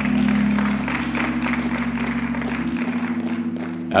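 Congregation applauding, a dense patter of many hands, over a steady held chord from a keyboard instrument whose lowest notes drop out near the end.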